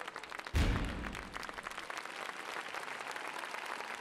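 Audience applauding in a large hall, with a single deep boom about half a second in.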